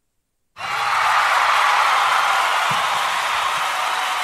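A loud, steady rushing noise with no clear pitch, which starts suddenly about half a second in and holds level throughout.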